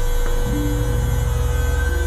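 Synthesizer drone in experimental electronic music: a deep, steady buzzing hum with a few high tones held over it.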